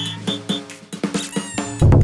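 Upbeat intro jingle music with short pitched notes. Near the end a quick sliding effect leads into a loud, deep bass hit.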